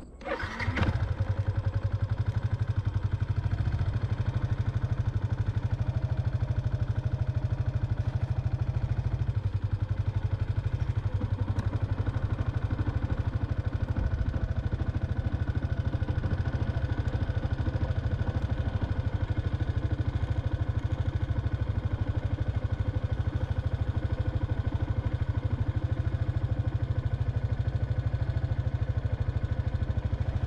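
A motorbike engine starts about half a second in, then runs steadily at an even pace as the bike rides along.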